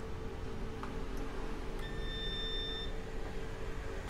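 A digital multimeter's continuity buzzer gives one steady beep of about a second, about two seconds in. The beep means the probed MOSFET pin is connected to ground, which marks it as the source of the low-side MOSFET.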